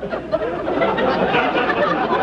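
Studio audience laughing, many voices together.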